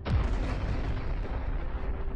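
Explosion of a high-explosive fragmentation missile warhead: a sudden boom, then a sustained low rumble.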